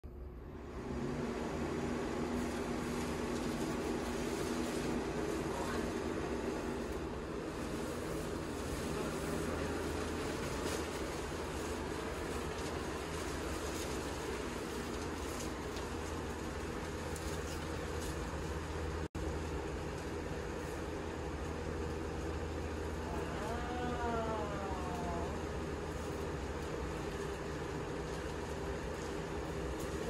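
Box fan running steadily at speed, with a low motor hum, blowing air into a large plastic-sheeting inflatable as it fills, the plastic rustling.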